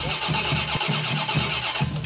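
A 383 stroker small-block V8 on an engine run stand being cranked by its starter: a steady starter whine over regular compression pulses, about four or five a second, without the engine firing. The cranking stops just before the end. The crew blames a bad starter.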